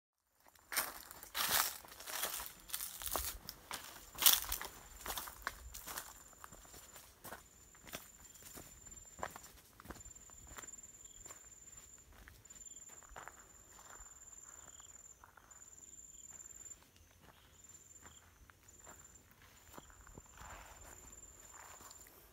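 Footsteps on dry ground and brush, loudest in the first few seconds and then lighter, under a thin, high insect trill that breaks off and resumes several times.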